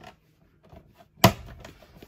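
A converter/charger unit clicks once, sharply, about a second and a quarter in, as it slides into its mounting bracket and the tabs lock in place. A few faint taps and scrapes come before the click.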